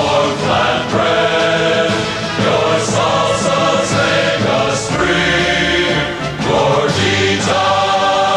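A choir singing a solemn anthem-style song, with the words 'to warm flatbread', 'your salsas make us free' and a closing 'Gorditas!'.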